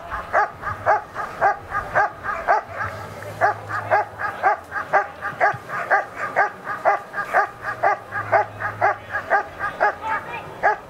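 German Shepherd Dog barking steadily and rhythmically at about three barks a second at a motionless helper. This is the guarding bark of IPO protection work, with the dog facing him off the sleeve.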